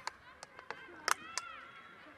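About five sharp hand claps at uneven spacing, the loudest a little past one second in, over distant high voices calling across the pitch.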